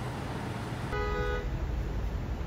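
Low rumble of a car driving, heard from inside the cabin, becoming louder about a second in. A brief horn-like tone sounds at that point.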